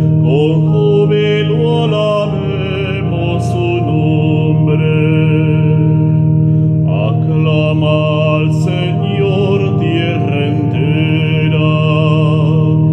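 A man singing a psalm setting in Spanish with vibrato, accompanying himself on an organ that holds long, sustained chords and a steady bass note.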